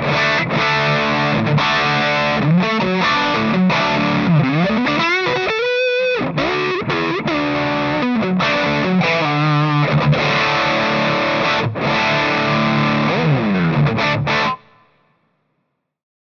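Electric guitar played through a stacked One Control Little Green Emphaser, Baltic Blue Fuzz and Crimson Red Bass Preamp, giving a thick, heavily distorted fuzz tone. The riff has bent notes and a held note with vibrato midway. The playing stops abruptly about a second and a half before the end.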